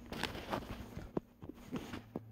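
Faint handling noise: a few soft clicks and knocks as the recording phone is moved and propped up against a couch, one slightly sharper knock just past a second in.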